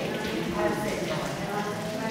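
Indistinct speech echoing in a church hall, with a few light knocks.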